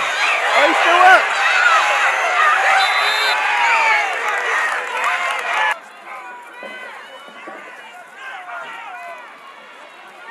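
Spectators at a youth football game shouting and cheering over one another, many voices at once. About six seconds in the sound cuts off abruptly to quieter, scattered shouts and chatter.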